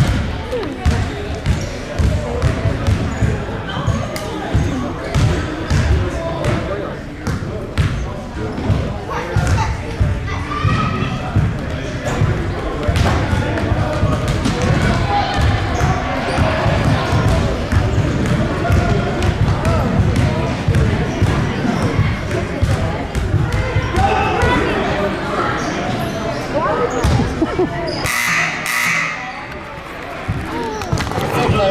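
Basketballs bouncing on a hardwood gym floor in a steady, irregular run of low thumps, with people talking in the background.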